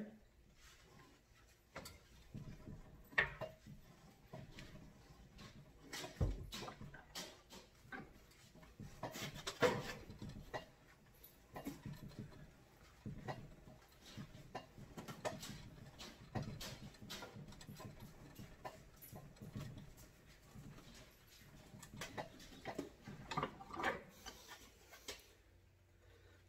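Faint, scattered scraping and rubbing as a greased braided hydraulic hose is twisted by hand into a reusable hose fitting clamped in a bench vise, with gloves rubbing on the hose. One low thump comes about six seconds in.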